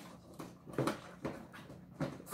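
Plastic swirl-open lid of an Itty Bitty Prettys teacup toy being turned with a plastic spoon: about four short plastic scrapes and rubs as the lid is worked round.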